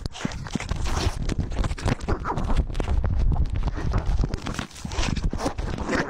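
Rumbling and knocking from a collar-mounted GoPro on a moving cat: quick footfalls and fur rubbing against the camera's microphone.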